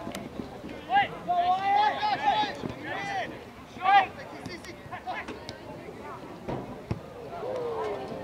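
Voices shouting across an outdoor soccer pitch during play: several short, loud calls in the first half, the loudest about four seconds in, then quieter background noise.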